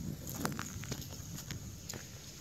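Footsteps of a person walking outdoors: a run of steps about two a second, the loudest about half a second in.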